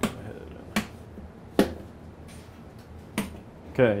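Four sharp clicks from switches on a furnace control panel, roughly evenly spaced, pressed to simulate a clogged air filter and raise the duct static pressure. Under them is the steady low hum of the furnace blower running.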